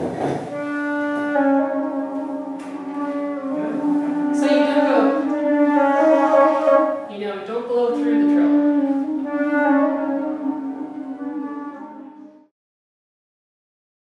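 Wooden baroque flute (traverso) playing a slow phrase of sustained, mostly low notes. It cuts off abruptly about twelve seconds in.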